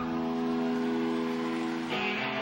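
Live rock band with an electric guitar holding a sustained, ringing chord while the bass drops away, then a new chord struck just before the end.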